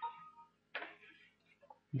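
A short computer system chime, two steady tones held for under half a second, sounding as an information message box pops up on the screen. A brief noise follows about three-quarters of a second in.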